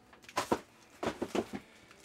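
A few light knocks and scrapes of a cardboard box and foam packing being handled and pulled aside.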